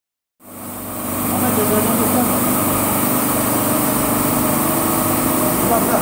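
Maxis automatic carpet washing machine running, its motors driving rotating brush discs over a wet carpet: a steady mechanical hum with a high hiss. It fades in over the first second and a half.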